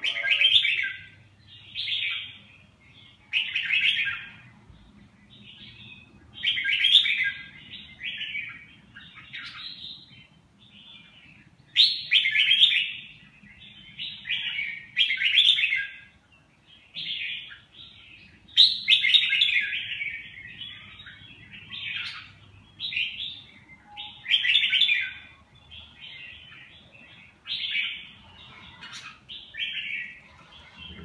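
Red-whiskered bulbul singing in a cage: short, bright chirping phrases repeated every second or two, over a faint low hum.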